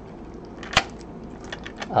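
A key being worked in a Schlage deadbolt's keyway, with one sharp metallic click about a second in and a few faint ticks near the end. The cured superglue in the lock has been dissolved with acetone, so the key now goes in and turns.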